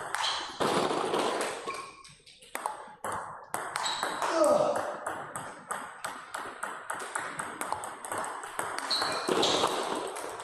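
Table tennis rally: the celluloid-type ball clicking off rackets and the table in quick succession, about three hits a second.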